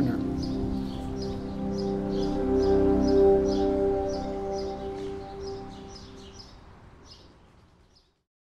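Background music holding a sustained chord that fades out, with a small bird chirping over it about three times a second, the chirps fading away near the end.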